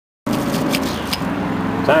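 Gas pump running as fuel flows through the nozzle into a truck's tank: a steady hum that starts about a quarter second in, with a few faint ticks.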